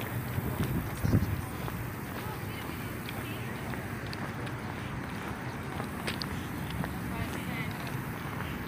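Steady outdoor background noise with a short low sound about a second in and a few faint ticks later on.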